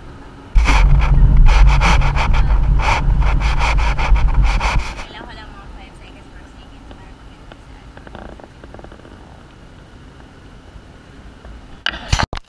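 Handling noise on a camera's microphone: loud rubbing and deep rumble from about half a second in to about 5 s, as the camera is moved. After that, steady road noise inside a moving van's cabin, with a few clicks at the very end.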